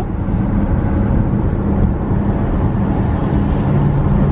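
Car cabin noise while driving at motorway speed on a wet road: a steady rumble of tyres and engine with a low hum that drops slightly in pitch near the end.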